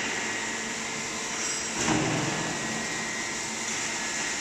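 Steel stud and track roll forming machine running: a steady mechanical hum with a thin high whine over it, and a single clunk about two seconds in.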